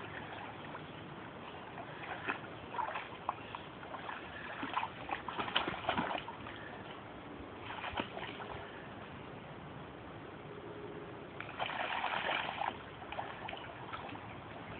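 Water splashing and sloshing as a dog swims and wades in a river, in irregular bursts, with the loudest spell of splashing near the end.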